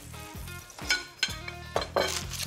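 Beaten egg sizzling as it is poured into a hot frying pan, with a few short sharp clicks.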